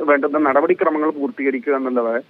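Speech only: a man talking over a telephone line, thin and narrow in range.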